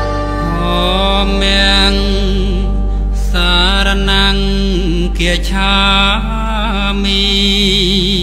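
A song: a voice sings a slow, wavering melody over a steady low bass note, with short breaks between phrases.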